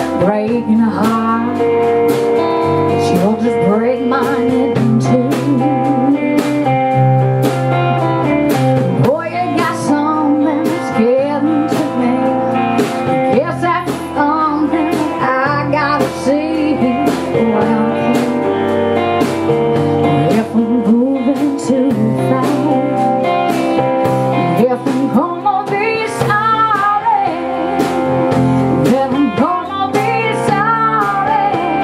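A blues song played by a band: guitar over a steady drum beat, with singing.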